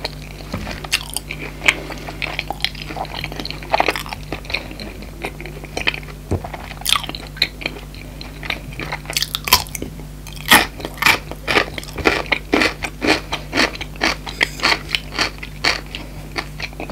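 Pickled gherkin bitten and chewed close to the microphone: crisp, crackly crunches, quieter chewing at first, then dense and loud from about nine seconds in.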